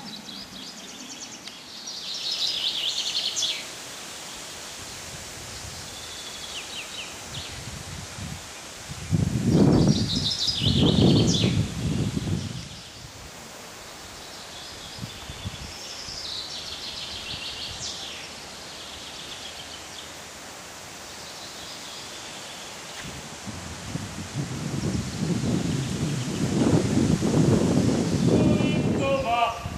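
Small birds singing in short trilled phrases every few seconds over a steady outdoor hiss. A louder low rushing noise comes in about nine to twelve seconds in and swells again near the end.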